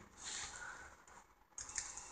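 Faint computer keyboard keystrokes, with a few key clicks near the end.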